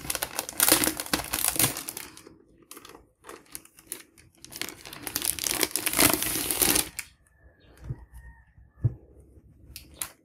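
Clear plastic wrapping crinkling as it is pulled off a vinyl LP sleeve, in two long crackly bursts. Near the end come two soft thumps as the record is handled and set down.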